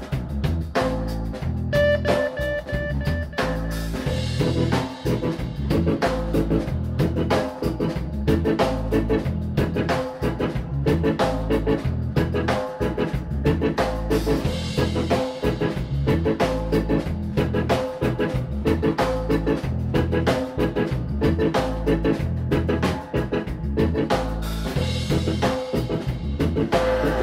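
Dub reggae band playing: a drum kit beat over a deep, heavy bassline, with keyboard.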